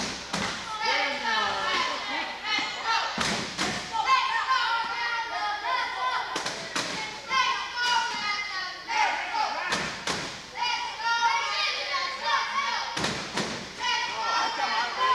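Wheelchair rugby play in a gym hall: loud echoing knocks and thuds about every three seconds, often two in quick succession, over shouting voices.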